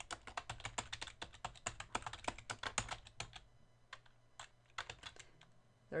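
Typing on a computer keyboard: a quick, continuous run of keystrokes for about three seconds, then a few scattered key presses.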